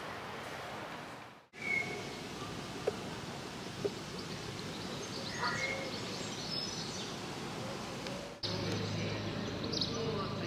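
Steady outdoor background noise with a few faint, short bird chirps. The sound briefly cuts out about a second and a half in.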